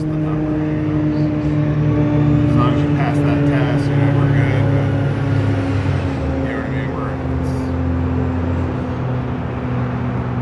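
Loud engine drone, a low hum slowly dropping in pitch, swelling a few seconds in and then easing off, with faint voices underneath.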